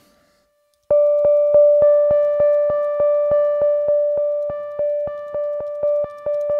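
Synthesizer playing one note over and over, about three times a second, each note struck sharply and fading. It starts about a second in, after a brief silence.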